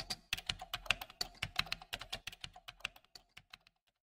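Typing on a computer keyboard: a quick, uneven run of keystrokes that grows fainter and stops shortly before the end.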